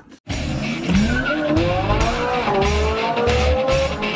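Race car sound effect: an engine accelerating, its pitch rising steadily, over music with a pulsing bass beat.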